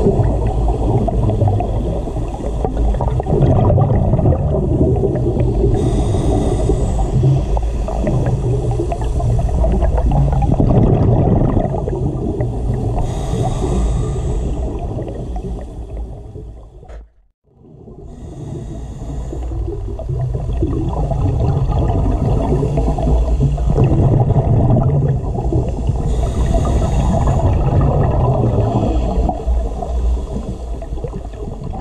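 Underwater sound picked up through a scuba diver's camera housing: a steady muffled rumble of water noise, with the bubbling of the diver's regulator exhaust surging every six or seven seconds. The sound cuts out briefly just past halfway and fades back in.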